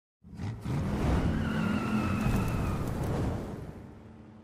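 A car engine revving hard with tires squealing, the sound dying away near the end.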